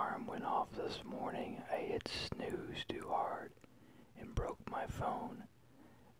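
A person whispering close to the microphone, reading a story aloud in short phrases, with a brief pause a little past halfway and another near the end.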